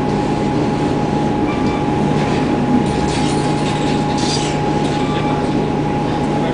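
Interior drone of an Orion VII Next Generation hybrid bus standing still: a steady low hum with a constant high whine over it from the hybrid drive system, and brief rattles about three and four seconds in.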